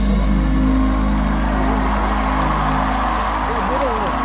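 Live band holding a sustained chord with a low bass note as a pop ballad comes to its close, with a few short sung notes near the end and crowd noise building underneath.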